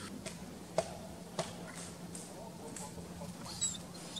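Quiet forest ambience with a faint steady low hum, two brief faint clicks in the first second and a half, and a few short, high squeaky chirps of a small bird near the end.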